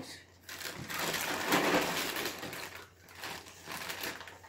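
Crinkling rustle of a cardboard cereal box and its plastic inner bag being pried open, lasting about two seconds, followed by fainter rustles.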